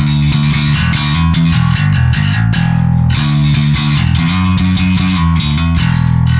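Saito S-521B five-string electric bass with hand-wound Jazz-style pickups, played fingerstyle through the Audified Sphene Pro amp simulator: a fast line of plucked notes with both pickups blended 50-50 and volume and tone fully up, giving a bright, full tone.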